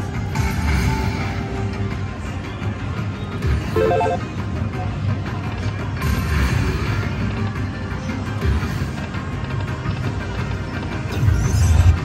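Electronic music and reel-spin sounds from an Aristocrat Lightning Link High Stakes video slot machine playing as its reels spin, running continuously over casino background noise.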